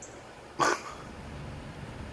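A single short, sharp animal call, like one bark, about half a second in, over a steady low rumble.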